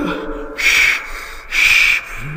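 A man's voice says 'oh dear', then gives two hissing 'shh' puffs about a second apart, imitating a steam engine puffing slowly.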